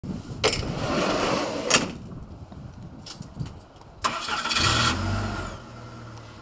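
USPS delivery truck's engine being started: a sudden burst of noise about four seconds in, then a steady low idle hum. A louder noisy stretch with a sharp click at each end comes earlier, from about half a second to nearly two seconds in.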